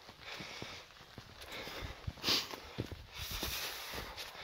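Footsteps of walkers in trail shoes on stone flagstones and rocky ground, hard taps at about two a second, with a short rushing burst a little over two seconds in.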